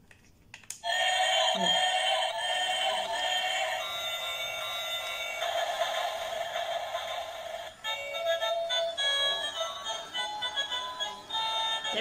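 Battery-powered light-up toy train playing its built-in electronic tune, starting about a second in and running on with a short break about eight seconds in.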